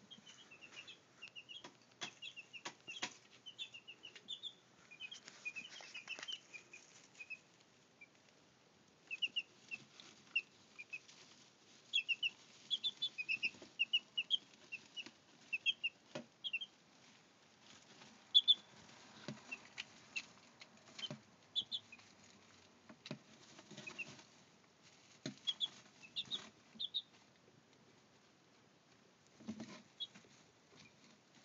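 Week-old Brahma chicks peeping in runs of short, high-pitched chirps, among scattered short clicks and rustles as the chicks move about in grass-clipping bedding.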